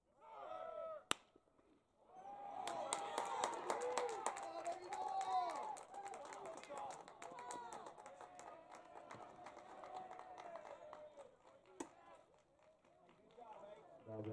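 A single sharp smack of a pitched baseball about a second in, then several voices shouting and calling out from the dugouts and stands with scattered handclaps. The shouting is loudest in the first few seconds and trails off before the end.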